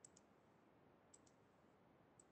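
Near silence, broken by two faint pairs of quick clicks, one pair right at the start and another about a second in.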